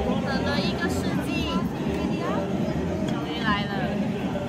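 Busy restaurant noise: people talking over a steady background of chatter and music.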